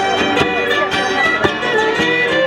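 Live Celtic band playing a fiddle-led Irish reel, with sharp percussive hits at an irregular beat.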